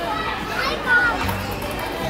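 Young children's voices and a short bit of speech over background music.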